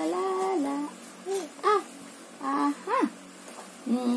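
Six-month-old baby babbling: a held vocal note at first, then several short squeals that rise and fall in pitch.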